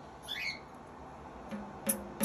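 A white cockatoo gives one short squawk that falls in pitch, a quarter second in. Near the end, a tambourine is tapped once, its jingles ringing over a low ring from the head.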